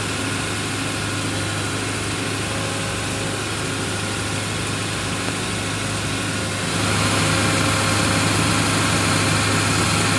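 An engine idling with a steady low hum, louder from about seven seconds in.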